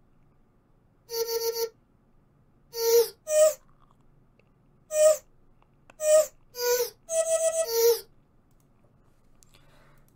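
Pitched vocal-chop sample playing a sparse melody of short sung notes with reverb, some notes stuttered in quick repeats, with no drums under it.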